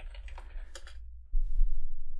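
Typing on a computer keyboard: a scatter of short key clicks over a steady low hum. A louder low rumble comes in about a second and a half in.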